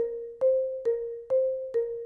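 Marimba played with four yarn mallets: single independent strokes, a little over two notes a second, alternating between two neighbouring notes, each one ringing briefly and fading before the next.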